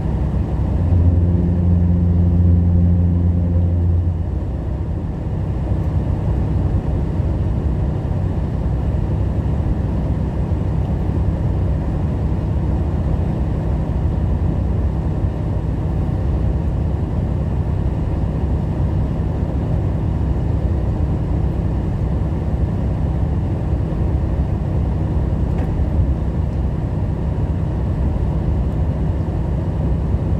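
Steady engine and road noise inside a semi-truck's cab at highway speed. About a second in, a louder low hum rises over it for roughly three seconds, then fades back into the drone.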